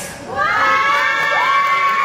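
Audience cheering with high-pitched, held screams. The cheering swells about half a second in, just after the music stops.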